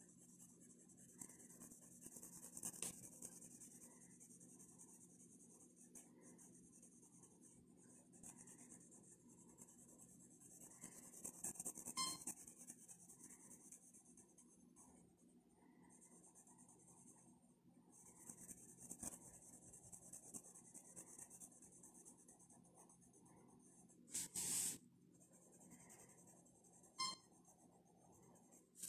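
Graphite pencil scratching on paper as an area is shaded in, quiet, in runs of short strokes with brief pauses. There is one short, louder scrape a few seconds before the end.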